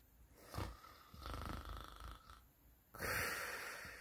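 A person snoring softly in sleep: a slow breath in with a faint whistle from about a second in, then a louder breath out near the end.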